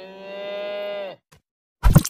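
A cow mooing once, a long call of about a second that dips in pitch at its end. Near the end, a sudden loud thump.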